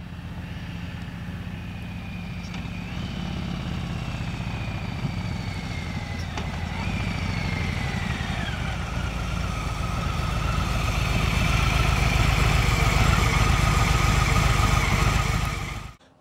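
Harley-Davidson Street Bob 114's Milwaukee-Eight 114 V-twin running as the bike is ridden toward the camera. Its low, pulsing rumble grows louder over the last few seconds. A higher tone rises and then falls twice as the revs change.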